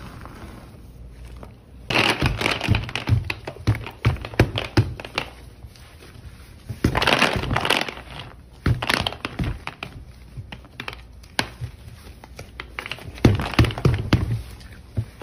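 Small wax melt tablets popping out of a bent silicone mold and falling onto a tabletop: dense runs of small clicks and crackles. They start about two seconds in, with louder flurries around the middle and near the end.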